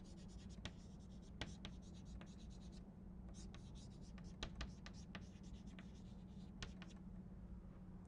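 Chalk writing on a blackboard, faint: a scattered run of short taps and scratches as the chalk forms letters.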